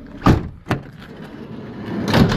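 Sliding side load door of a Vauxhall Vivaro van being opened: two sharp clunks as the handle and latch release, then the door starting to roll back along its runner near the end.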